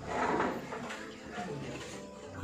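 Indistinct murmur of voices and clatter in a busy open-air eating area, with a rush of noise loudest in the first half second.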